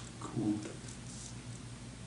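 Pen scratching on paper during writing, starting with a sharp click. A brief squeaky pitched sound comes about half a second in, over a steady low hum.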